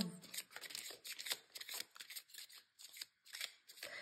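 Tarot cards being shuffled and handled by hand: a quick, irregular run of faint paper flicks and rustles.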